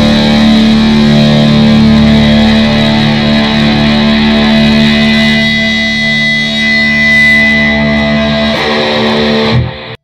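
Heavy metal guitar music ending on long held, ringing chords of distorted electric guitar, with a new chord struck shortly before the end, then the sound cuts off suddenly.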